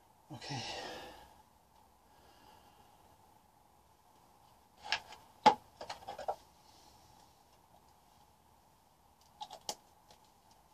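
A man says "yeah" and sighs at the start. Then come a cluster of sharp clicks and knocks about five to six seconds in, the loudest among them, and a few more near the end, as paint containers are handled.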